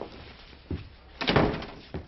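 A light knock, then a door shutting with a thud about a second and a half in.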